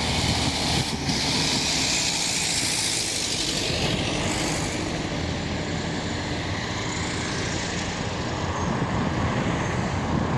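Street traffic noise, with a passing vehicle's tyre hiss swelling about a second in and fading after about four seconds over the steady road noise.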